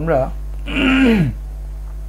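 Someone clearing their throat once, a short raspy sound lasting under a second that falls in pitch as it ends, over a steady low electrical hum.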